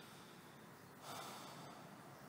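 Near silence with one short, soft breath from the narrator about a second in.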